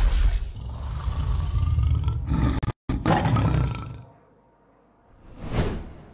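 Promo-video sound effects played over a venue PA: a deep tiger-roar effect with music, cutting out for an instant about three seconds in and fading away a second later, then a single whoosh near the end.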